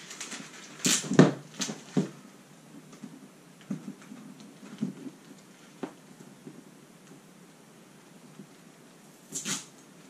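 Adhesive labels being peeled off a hard plastic case: a few short tearing and handling noises in the first two seconds, then fainter scraping and light ticks as a label is picked at on the lid, with a couple more short peeling noises near the end.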